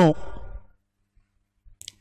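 A man's speaking voice trails off at the end of a phrase, followed by about a second of silence. Near the end, a few faint clicks come just before the voice starts again.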